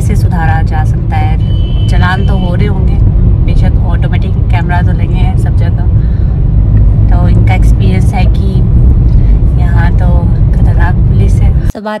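Steady low rumble of a car's engine and tyres heard from inside the cabin, under talking; it cuts off abruptly just before the end.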